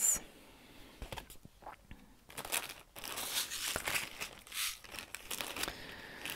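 Packaging crinkling and rustling as it is handled and put away, after a few small clicks in the first half.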